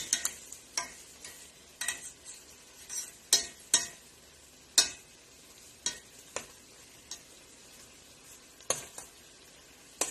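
Metal tongs clacking against a metal pot as chicken pieces are turned while they brown, about a dozen irregular sharp clicks over a faint sizzle.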